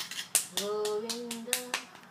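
A young child singing a held, wavering note while clapping his hands about six times. The note steps up in pitch near the end.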